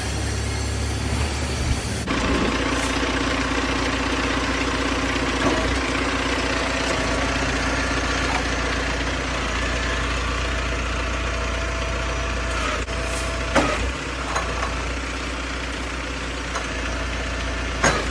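Truck engine running steadily, powering the hydraulic pump of a truck-mounted grab crane, with a couple of sharp knocks in the second half.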